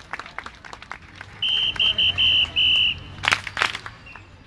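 Five short blasts of a high, steady whistle tone, after scattered clapping from the crowd, with a low engine hum underneath and two loud sharp noises shortly before the end.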